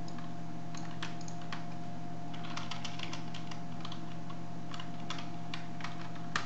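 Computer keyboard keystrokes: scattered clicks, with quick runs of them about halfway through and again near the end. A steady low electrical hum and a faint steady tone run underneath.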